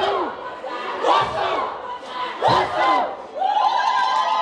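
A loud voice shouting three drawn-out calls, each rising and falling in pitch, about a second and a quarter apart, then a long held high note near the end.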